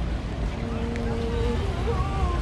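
Passers-by talking, with one voice heard plainly from about half a second in, over a steady low rumble of wind on the microphone.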